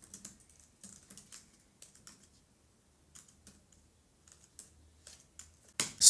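Typing on a computer keyboard: faint, irregular key clicks, with a short pause about midway.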